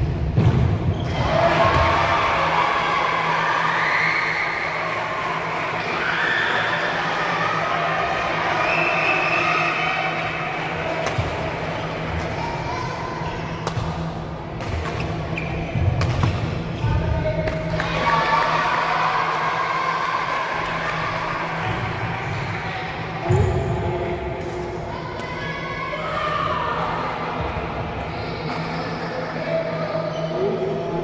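Badminton rally on a wooden indoor court: shoe squeaks, shuttlecock hits and footfalls over the steady hum and murmur of a large hall. Heavy thuds stand out at the start and about 23 seconds in.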